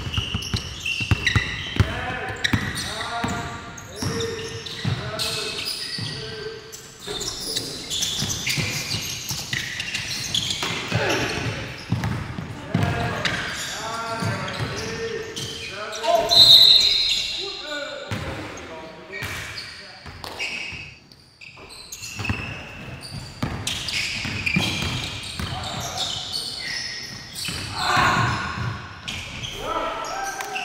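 A basketball being dribbled and bounced on a hardwood gym floor during a game, with players' voices calling out, all echoing in a large gym. A short, loud, high-pitched sound comes about halfway through.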